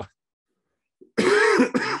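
A man laughing and coughing about a second in: one rough burst followed by a second short one.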